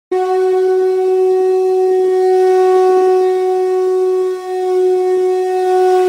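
A single long, steady horn-like note, one unchanging pitch rich in overtones, starting abruptly and held with a brief dip about four and a half seconds in.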